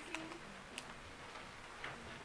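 A few faint, sharp clicks, about three, spread across a quiet pause.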